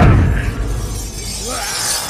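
Fight sound effects: a heavy crash as two owls slam together, then a loud rushing, crashing noise that slowly fades. A short gliding cry comes near the end, with the film score underneath.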